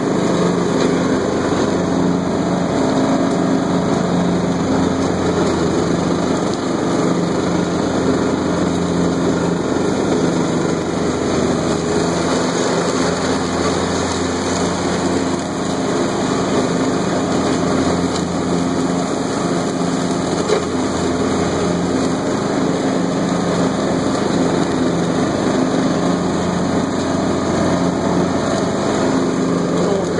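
Troy-Bilt Horse XP 20-horsepower riding lawn tractor running steadily at about two-thirds throttle, its deck blades cutting thick field grass and brush. The engine holds an even pitch under the load and never bogs.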